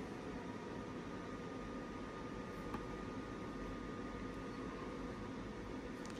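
Faint, steady background hiss of room noise, with one small click a little before the middle.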